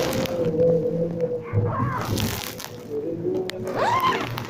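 A man's voice chanting a Hebrew prayer melody in synagogue. It holds one long note for about two and a half seconds, moves through a few lower notes, and slides up in pitch near the end.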